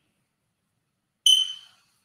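Silence, then about a second in a brief high-pitched squeak, one steady whistle-like tone that fades away within half a second.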